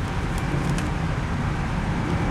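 Steady low rumble of outdoor background noise, like distant traffic, with a few faint ticks from a deck of tarot cards being handled.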